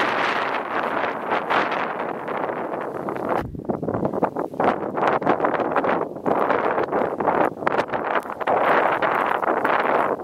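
Skiing through deep powder snow: a rushing hiss of skis in the snow, with wind on the microphone. It swells and drops out briefly a few times.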